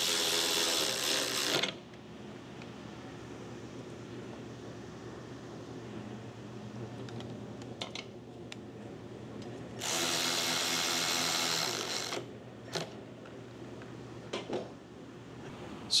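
Handheld cordless power tool whirring in two bursts of about two seconds each, once at the start and again about ten seconds in, as it turns a bolt on the side plate of a Toro DPA reel cutting unit. A few faint metal clicks and knocks fall between the bursts.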